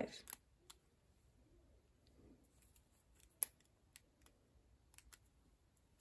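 Faint, scattered clicks and snaps of rubber loom bands being stretched and pulled over a crochet hook, with one sharper snap about three and a half seconds in.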